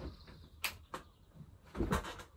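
A person moving about while switching on a room light: two short, sharp clicks about two-thirds of a second and a second in, then a low thump near the end.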